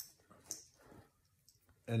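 Faint clicks and a brief rustle of a soft garment and a plastic clothes hanger being handled: a sharp click at the start, a short rustle about half a second in, then a few light ticks.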